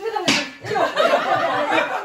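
A group of people laughing and chattering, with one sharp smack about a third of a second in.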